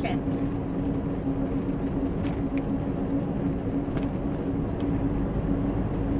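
Scania 113 truck's six-cylinder diesel engine running steadily on the road, a constant drone with rumbling road noise, heard from inside the cab.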